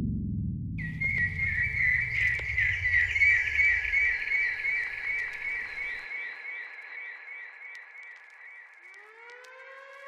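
Opening of a boom bap beat: a high, warbling, siren-like whistle tone enters about a second in over the fading low tail of the previous track and slowly dies away. Near the end a second siren-like tone sweeps up in pitch.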